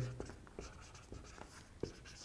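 Felt-tip marker writing on a whiteboard: a run of faint short strokes, with one sharper tick near the end.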